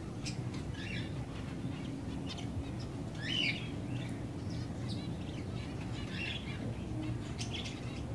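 Java sparrows (Java finches) chirping: short, scattered calls throughout, with one louder rising call about three seconds in.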